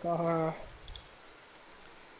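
A short held spoken syllable at the start, then a few faint clicks from the computer's mouse and keyboard as text is selected and typed over: two close together about a second in, and another soon after.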